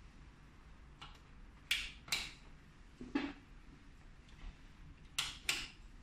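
About five sharp plastic clicks and knocks, in two close pairs with one between, from a hand working a power strip to cut and restore power to a digital panel indicator.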